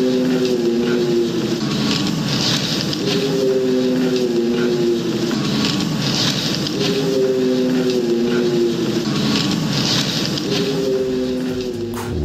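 A low, drawn-out howl-like call, falling slightly in pitch, repeated four times about every four seconds over a steady hiss. It is a recording presented as a dogman howl, one that does not sound like a normal wolf.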